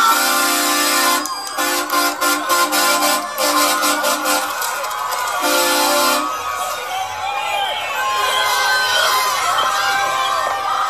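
Pickup truck's horn honking in several long, steady blasts over the first six seconds, heard from inside the cab. A crowd then shouts and cheers around the vehicle.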